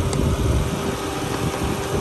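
Honda Accord engine idling steadily with the hood open, with a steady hum over a low rumble.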